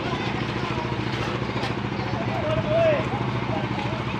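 A truck engine idling steadily, with people talking in the background.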